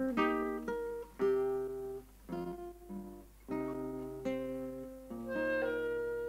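Acoustic guitar plucking a short run of notes and chords, each note dying away, then a final chord that rings on and slowly fades: the closing bars of the piece.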